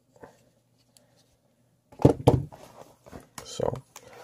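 Quiet for the first half apart from a couple of faint taps, then a man's voice muttering a few unclear words twice in the second half.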